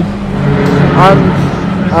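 Praga race car's engine running hard, heard from inside the cockpit as a steady drone, with a rising note about halfway through as it revs.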